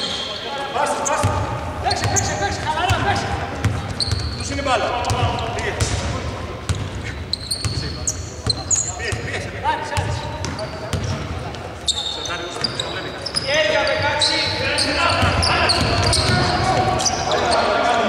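Basketball being dribbled on a hardwood court, with repeated bounces, short high sneaker squeaks and players' voices calling out, echoing in a large, mostly empty arena.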